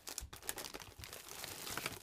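Packaging crinkling and rustling as a hand rummages through foil and plastic snack packets on a crowded pantry shelf, an irregular run of crackles.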